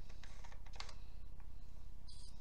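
A few light clicks and ticks from handling a small metal camera lens, an Industar 50mm f3.5 pancake, with the camera, over a steady low hum.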